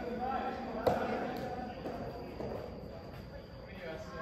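A soft tennis racket hits the rubber ball once, a sharp pop about a second in, with a fainter knock about half a second later, amid players' voices.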